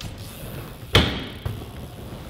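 A BMX bike hitting a skatepark ramp: one loud bang about a second in with a brief metallic ring, then a lighter knock, over the noise of tyres rolling on the ramp.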